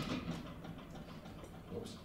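A pause in speech: quiet room tone with a low steady hum, then a man's soft "oops" near the end.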